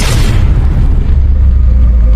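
Cinematic outro sound effect: a deep boom that hits just before and rings on as a loud, steady low rumble, with faint sustained music tones coming in over it about a second in.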